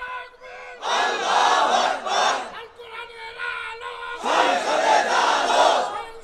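A large crowd of men shouting together in unison, two long massed shouts about three seconds apart.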